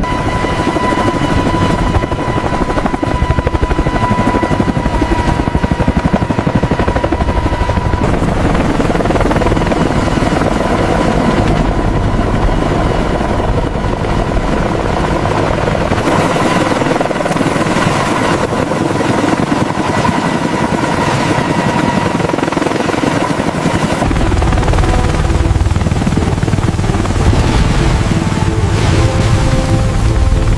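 Large helicopter running close by: rapid rotor blade chop over turbine noise, with a steady whine through the first third. The deep rumble thins for a stretch past the middle and comes back near the end.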